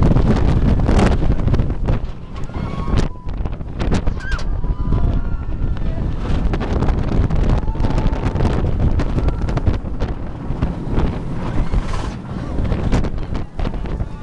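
Wind buffeting the microphone and the rumble of the Goliath steel roller coaster train racing down the drop and through the course at speed. Faint rider cries come through now and then.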